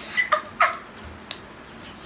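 A woman's high-pitched laughter in three or four short squeals during the first second, followed by a single sharp click.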